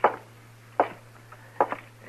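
Three short knocks about a second apart, the last one doubled: sound effects in an old radio drama, over a steady low hum from the recording.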